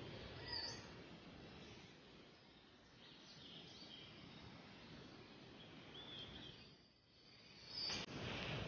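Faint outdoor ambience with a few short, high bird chirps scattered through it, one about half a second in and others near the middle and the end.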